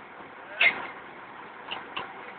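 A single short vocal call about half a second in, over steady background noise, with two faint brief sounds near the end.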